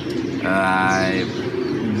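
Domestic pigeon cooing: one drawn-out coo, about half a second in.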